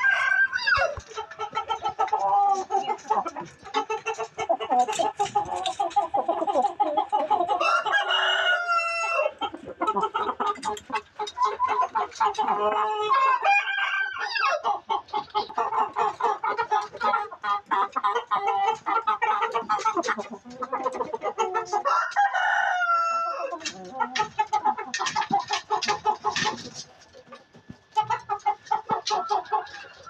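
A flock of chickens clucking busily and continuously. A rooster crows about three times, roughly 8, 13 and 22 seconds in. The clucking thins out near the end.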